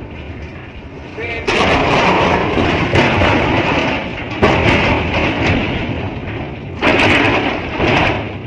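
Strong wind buffeting the microphone in gusts, a rough rushing noise that surges suddenly three times, about a second and a half, four and a half and seven seconds in.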